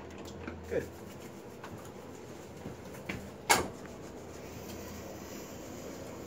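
A single sharp knock about halfway through, over low room tone.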